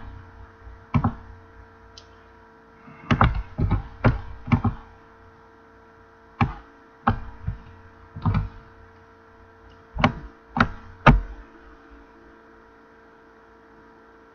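About a dozen sharp, short clicks and knocks at irregular spacing, in loose groups, from hands working a computer mouse and keyboard, over a steady electrical hum.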